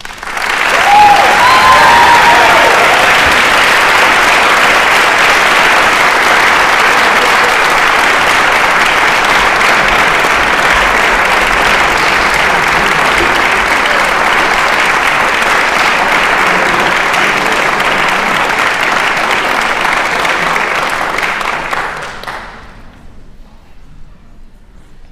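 Audience applauding, starting right as the music ends, holding steady for about twenty seconds and dying away near the end.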